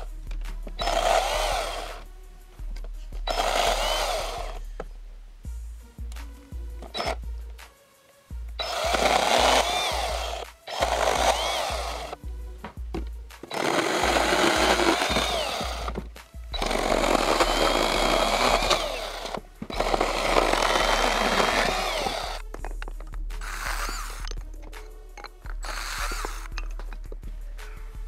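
Kobalt 24V brushless cordless pruning chainsaw with a 6-inch bar cutting through branches in repeated bursts of one to three seconds, its pitch rising and falling as it runs up and bogs in the wood. Background music plays underneath throughout.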